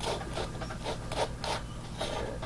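Plastic fruit fly culture cup being handled and turned in the hand: faint irregular rubbing and scraping with a few soft ticks.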